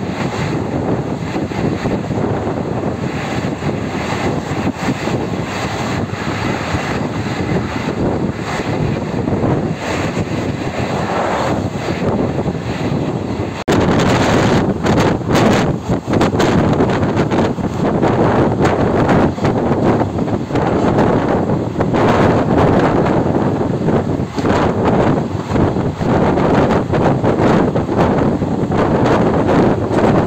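Steady rush of wind and rolling noise from a moving diesel-hauled passenger train, heard from an open coach doorway with wind buffeting the microphone. It gets suddenly louder about halfway through, with short irregular buffets after that.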